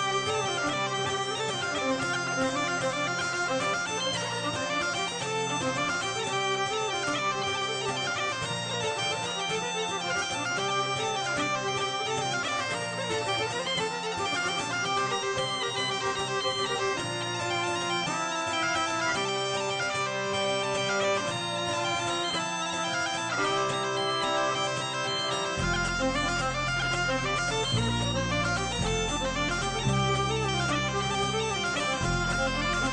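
Folk band playing an instrumental waltz: a bagpipe carries the melody over its steady drone, with acoustic guitar accompaniment. A deeper bass part enters about 25 seconds in.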